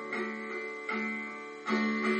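Steel-string acoustic guitar playing a song intro: three chords strummed about 0.8 s apart, each left to ring and fade before the next.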